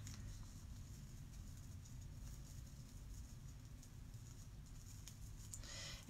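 Very quiet room hum with faint small ticks and rustles of a chenille stem being twisted by hand around the gathered middle of a wired-ribbon bow.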